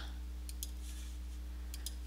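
A few faint computer mouse clicks, about half a second in and again near the end, over a steady low hum.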